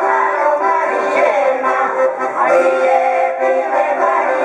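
Women's folk singing group singing together in long held notes, with a piano accordion accompanying them.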